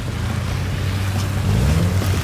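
Subaru WRX's turbocharged flat-four engine running at low speed as the car creeps forward, getting louder, with a short rise in pitch near the end. A steady hiss lies over it.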